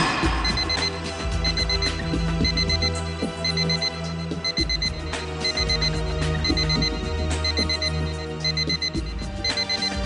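Electronic alarm beeping in quick groups about once a second, coming from a parked car's boot, which onlookers fear is a bomb. Dramatic background music with a low drone plays underneath.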